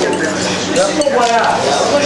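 Forks and cutlery clinking against plates while a crowded table eats, with voices talking over it.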